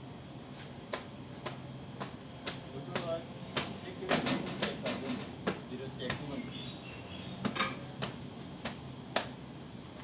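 A cloth being flicked and slapped against a generator's engine and metal canopy while it is dusted: sharp, irregular slaps, roughly one a second.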